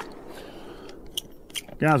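A lull with a low steady background hiss and a few faint small clicks, then a man's voice starting near the end.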